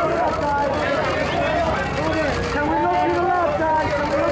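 Many overlapping voices of press photographers calling out to the couple they are shooting, a steady din of shouted speech with no single clear voice.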